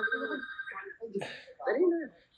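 Talking voices over a phone ringing with a steady electronic tone, which stops about a second in.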